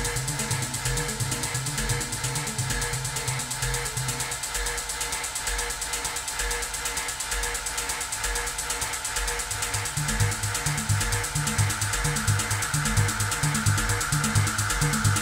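Techno played live: a steady kick drum about twice a second under fast, dense high percussion. The bass line drops out about four seconds in and comes back near ten seconds, while a gritty noise sweep swells toward the end.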